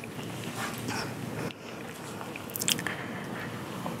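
Soft rustling and handling noise picked up by a handheld microphone while it is being moved, with a few faint clicks about two-thirds of the way through.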